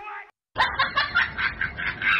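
A person's snickering laugh in quick short bursts, starting about half a second in, just after the tail of a spoken word.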